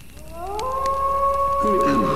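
A wailing tone on the soundtrack that glides upward over about half a second and then holds one steady pitch, with a low voice speaking briefly near the end.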